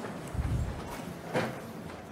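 A crowd of audience members getting up from their seats: shuffling and a low rumble of movement, with a sharp knock about a second and a half in.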